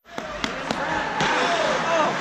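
Ice hockey play in an indoor rink, cutting in abruptly: three sharp clacks of sticks and puck in the first second, then short shouted calls from players or spectators, over the echoing noise of the arena.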